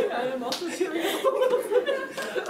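Indistinct voices talking and chuckling, not picked up as words, with a few short sharp smacks among them.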